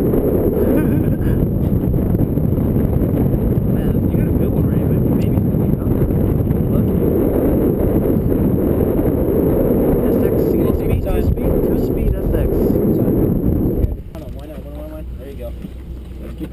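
Loud, steady rumbling of wind buffeting the camera's microphone on a boat deck, with the noise dropping away abruptly about fourteen seconds in; faint voices follow near the end.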